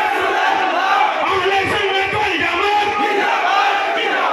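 A man's raised voice delivering a fervent religious speech through a microphone and public-address loudspeakers, loud and echoing, with no break.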